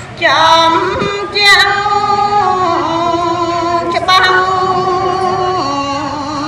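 A woman singing Khmer smot, Buddhist chanted verse, in long held notes with sliding ornaments between pitches; a new phrase begins a fraction of a second in.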